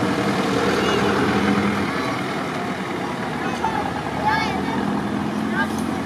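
A steady, loud rumbling background noise, with a few short high-pitched voice sounds about halfway through and again near the end.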